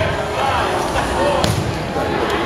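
A rubber dodgeball striking a hard surface once, a sharp smack about one and a half seconds in, over the chatter of players and spectators in a gymnasium.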